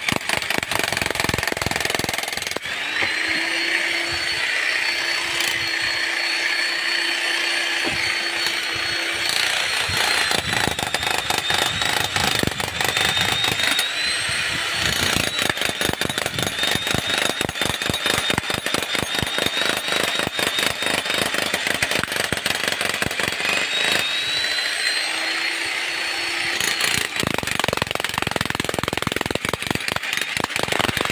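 Corded electric demolition hammer breaking concrete: a rapid, continuous stream of hammer blows over a steady high motor whine, the pitch shifting a few times as the tool is loaded and eased.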